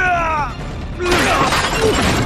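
A wooden table smashing apart as a body crashes onto it: a sudden crash of splintering, cracking wood about a second in.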